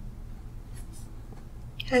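Quiet room tone with a steady low hum and a faint brief rustle about a second in.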